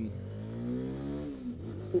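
CFMoto 300SS single-cylinder engine revving hard under acceleration in the low gears, its pitch climbing for about a second and then dropping away, with wind rushing past.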